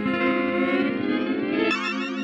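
Distorted electric guitar played through the Eventide Rose delay pedal, a chord held and ringing with echoing repeats whose upper tones glide upward in pitch. Near the end a fast wobble sets in on the high tones.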